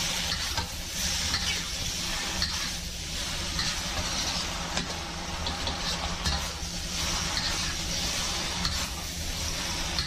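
Rice noodles, beef and bean sprouts sizzling in a wok as they are stir-fried, with a metal spatula scraping and clicking against the pan. A steady low hum runs underneath.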